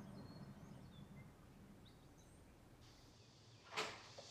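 Near silence with a few faint, high bird chirps in the first two seconds, then a single short thump near the end.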